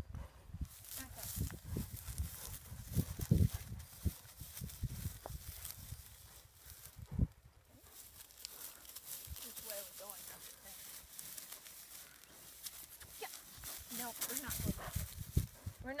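A ridden horse stepping about on dry crop stubble, with a low rumble and two sharp thumps, the first a few seconds in and the second about seven seconds in. Faint, indistinct voices come in later.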